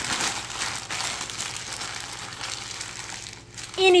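Shiny foil gift wrap being crumpled by hand, a dense crackling crinkle that dies down over about three seconds.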